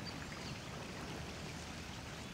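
Faint, steady outdoor background noise: an even hiss with nothing standing out.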